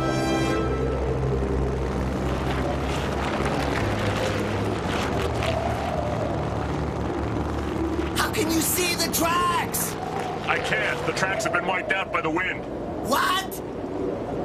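Cartoon soundtrack: music over a rushing sandstorm wind effect. From about eight seconds in, there are shouted voices over the wind.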